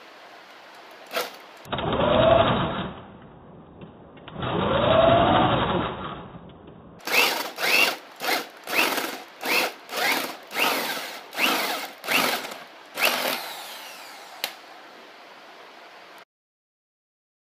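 A FERM PDM1056 corded power drill boring a 3/4-inch hole through softwood with a large wood bit: two longer runs in which the motor speeds up and slows down as the bit bites, then a quick string of short trigger bursts, about two a second, as the bit is fed in stages.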